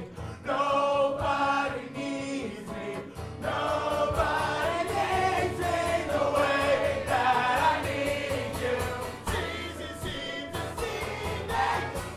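A man sings loudly to a strummed acoustic guitar in a live performance, with other voices singing along. The music gets fuller about three seconds in.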